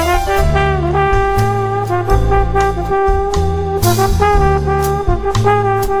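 Jazz band playing an instrumental passage: a slow, sustained lead melody with a brass-like tone over an upright bass stepping from note to note and drums with cymbal strikes.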